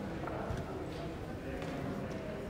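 Indistinct murmur of people talking in a church after the service, with a few light knocks and clatters on a hard floor.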